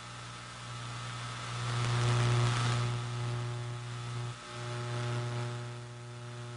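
Steady electrical hum or buzz from the sound system, a low drone with a string of higher overtones. It swells about two seconds in and drops out for a moment about four and a half seconds in.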